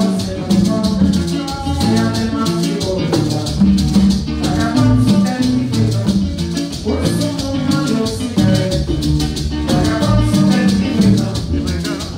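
Haitian twoubadou band playing live: maracas shaking a steady beat over a strummed acoustic guitar and a hand drum.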